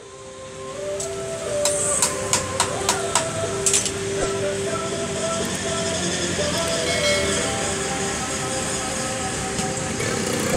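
Repair-shop din rising in at the start and running steadily, with held tones in it, and a run of sharp clicks between about one and four seconds in.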